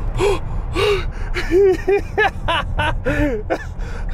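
A man gasping and crying out in a string of short yelps, each rising then falling in pitch, about three a second, with sharp breaths between them. A low rumble runs underneath.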